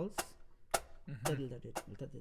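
Drumstick clicks with a sharp wooden knock keep a continuous pulse of about two a second. A man sings a wordless melody over them, starting about half a second in.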